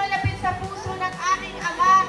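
Zumba dance music with a singing voice, played loud, with the voices of a large crowd under it.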